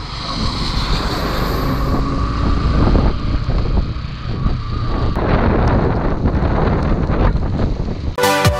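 Motorcycle riding on a wet road: steady wind rush over the bike-mounted camera's microphone, with the engine and tyre noise underneath.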